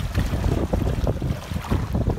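Water splashing irregularly as a hooked tiger shark thrashes at the surface beside a boat's hull, over a steady rumble of wind on the microphone.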